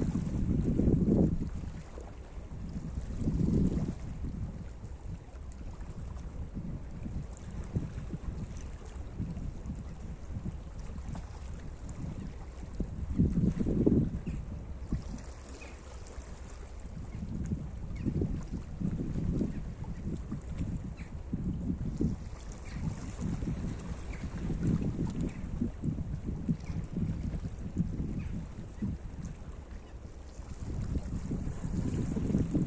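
Small sea waves washing in over a rocky shoreline, with gusts of wind rumbling on the microphone. The rumble swells and fades unevenly, strongest about a second in and again near the middle.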